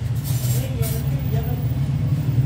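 Steady low rumble of background noise, with faint, indistinct voices.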